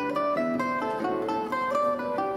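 Concert zither being played: a melody of plucked notes, several a second, over lower accompanying notes.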